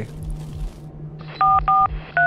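Touch-tone telephone keypad dialing: two short two-tone beeps in quick succession, the same key pressed twice, starting about one and a half seconds in, over a low steady hum.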